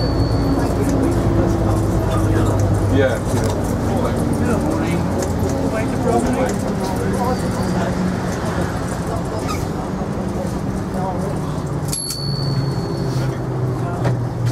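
Diesel engine of a vintage London single-deck bus running, heard from inside the passenger saloon, its note shifting a little as it drives, with low passenger talk over it.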